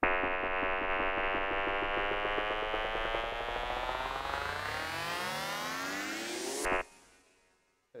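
Synth riser played on the Serum wavetable synthesizer: a sustained digital wavetable tone that sweeps steadily upward in pitch and brightness for about six and a half seconds as an LFO moves the wavetable position and opens the filter cutoff. It then cuts off suddenly, leaving a short plate-reverb tail that fades away.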